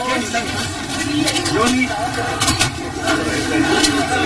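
Several people's voices talking over one another while a vehicle engine runs, with a few sharp knocks about a second in, midway and near the end.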